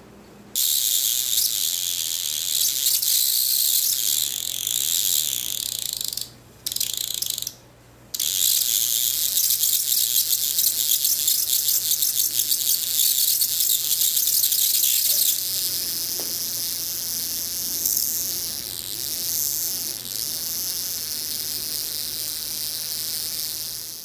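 High-voltage spark gap arcing continuously between rounded metal rod electrodes: a rapid, high-pitched crackling buzz, with a magnet's field bending the arc beside the gap. The discharge drops out twice briefly around six and seven and a half seconds in, and is a little weaker in the last third.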